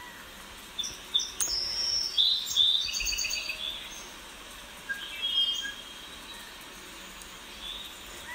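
Songbirds chirping: a run of short, high chirps and quick repeated notes in the first three seconds, then a few more about five seconds in, over a steady faint hiss.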